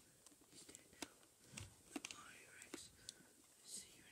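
Near silence, with a faint whisper and a few soft clicks and rustles scattered through it.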